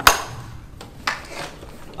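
A sharp knock of hard plastic as a compact upright auto floor scrubber's brush housing is handled, followed by a fainter knock about a second later.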